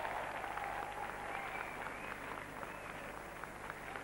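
Crowd applauding, a steady patter of many hands clapping that gradually grows quieter.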